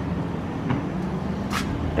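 Steady low rumble of outdoor background noise in a parking lot, with a short hiss about a second and a half in.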